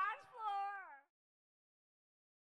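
A high-pitched, voice-like call whose last note glides downward, cut off abruptly about a second in and followed by dead silence.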